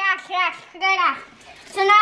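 Speech only: a child talking in short high-pitched phrases, then a voice again near the end.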